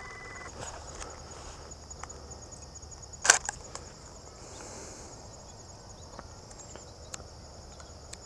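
A steady, high-pitched chorus of field insects runs throughout. About three seconds in, a DSLR camera's shutter fires once with a sharp double click, for a shot taken without flash. A brief electronic beep ends just after the start.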